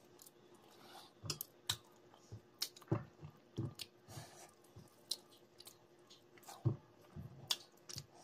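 Close-up eating sounds: a person chewing a mouthful of curry-mixed rice with irregular wet mouth smacks and clicks, a couple of them louder than the rest.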